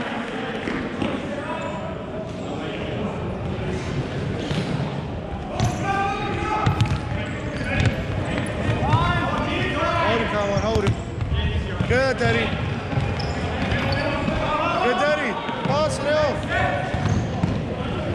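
Indoor soccer play on a wooden sports-hall floor. Shoes squeak again and again as players turn, the ball thuds off feet and floor several times, and players' voices carry in the background. The squeaks and kicks come thicker after the first few seconds.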